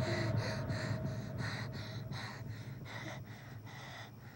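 A young girl breathing in quick, shallow gasps, about four breaths a second, getting gradually quieter over the few seconds.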